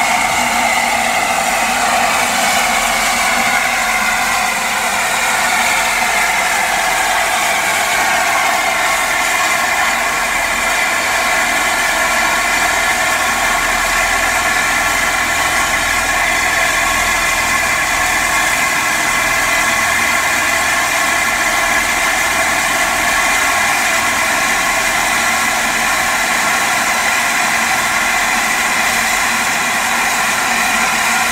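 Steam escaping from a standing LNER A4 Pacific steam locomotive, No. 4498 Sir Nigel Gresley, in a loud, steady hiss. There are a few whistling tones in it that sink slightly during the first few seconds and then hold steady.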